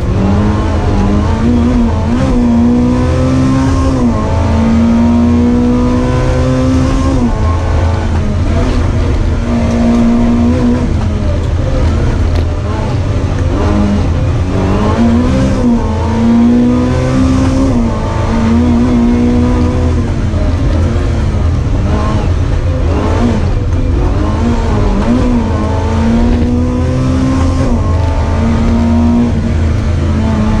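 Small race car's engine heard from inside the cockpit, revving up and dropping again and again as the car accelerates, lifts and changes gear through a cone slalom.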